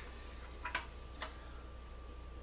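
A few light clicks as a rubber sealing gasket is lifted off a plastic fiber optic splice closure and handled: two sharp clicks, the first under a second in and the second about half a second later.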